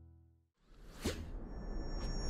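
Sound-design swoosh for an animated logo sting: after a brief silence, a noise swell rises, with a sharp whoosh about a second in that drops in pitch. The last held note of a music track fades out at the very start.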